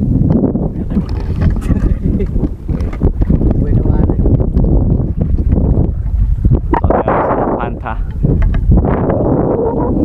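Loud, gusty low rumble of wind buffeting the microphone on an open boat on the water, with muffled voices about seven seconds in.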